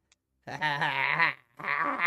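A man's voice making two drawn-out, wavering, wordless sounds, one starting about half a second in and the next just before the end, with a quivering, bleat-like pitch.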